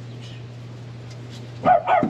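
A dog barking twice in quick succession near the end, over a steady low hum.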